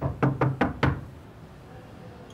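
A quick series of about five knocks on a wooden door, all within the first second.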